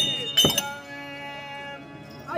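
Small metal hand cymbals struck twice, about half a second apart, then left ringing and slowly fading as the song's accompaniment pauses.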